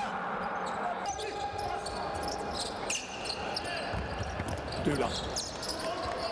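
Live game sound of basketball on an indoor hardwood court: the ball bouncing as it is dribbled, with short high squeaks and scattered voices in the hall.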